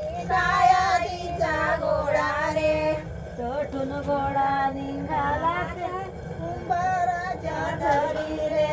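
Women singing an ovi, a traditional grinding-mill song, unaccompanied, in long held notes that waver in pitch, phrase after phrase.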